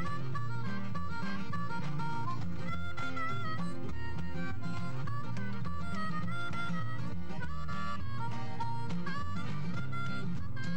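Jug band instrumental break: a harmonica carrying the melody over strummed acoustic guitar and a washtub bass keeping the beat.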